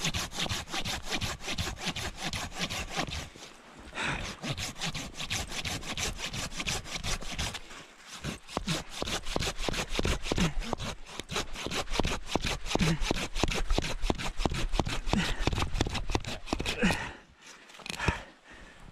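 A folding pruning saw with a curved, toothed blade cutting through a small log in quick, even back-and-forth strokes. There are short pauses about four and eight seconds in, and the sawing stops shortly before the end as the round comes free.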